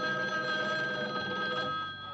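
A rotary desk telephone ringing: one long ring that dies away near the end.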